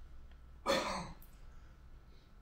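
A man clearing his throat in one short, rough, cough-like burst a little over half a second in.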